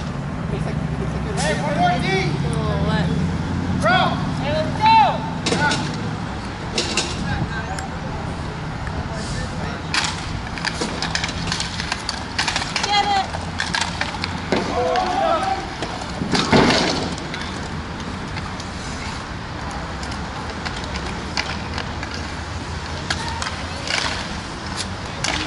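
Inline roller hockey in play: sharp clacks of sticks, puck and boards, with players' shouts and calls, over a steady low hum. The loudest knock comes about two-thirds of the way through.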